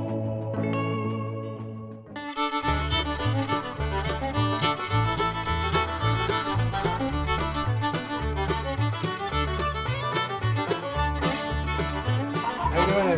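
Background music led by plucked guitar. About two seconds in it dips briefly, then a fuller country-style track with a steady, repeating bass line and beat takes over.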